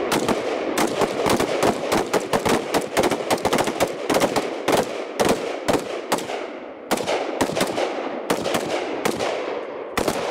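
Rifle gunfire on an open range: rapid, irregular shots from more than one rifle, crowding together in the first half and thinning to about one or two a second later, each shot ringing out with an echo.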